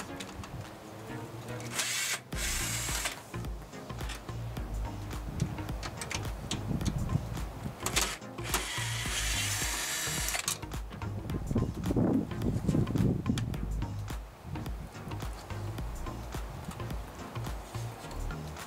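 Cordless Makita drill/driver backing out the two screws of an air conditioner's capacitor bracket: two short runs, one about two seconds in and a longer one about eight seconds in.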